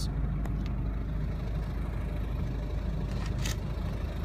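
Ford Focus 1.6 TDCi four-cylinder diesel engine idling steadily. A couple of brief knocks or rustles of handling noise come over it, the most marked about three and a half seconds in.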